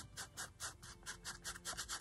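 Small round ink applicator rubbed quickly over the surface of a paper card, a fast run of faint scratchy strokes, about seven or eight a second, as ink is worked in to tone down the card's bright colour.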